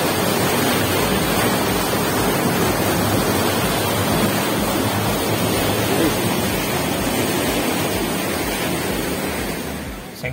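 Fast, turbulent water rushing through a brick-walled irrigation channel beneath a waterwheel: a steady, loud rush that eases slightly near the end.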